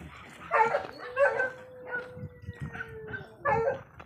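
A dog barking several times in short bursts, with a long, thin, slightly falling whine between the barks.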